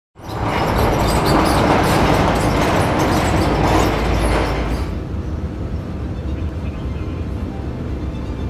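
A large corrugated-metal sliding hangar door being pushed along its track: a loud rattling rumble that stops about five seconds in, followed by a quieter steady background.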